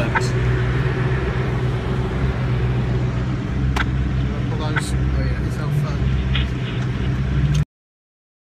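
Koenigsegg One:1's twin-turbo V8 running steadily at low revs, heard from inside the cabin, with a few sharp clicks and knocks. The sound cuts off suddenly near the end.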